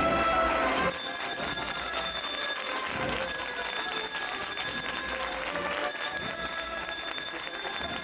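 Processional throne bell rung in three runs of rapid strikes, each a couple of seconds long with short breaks between: the signal to the bearers. Band music fades under it about a second in.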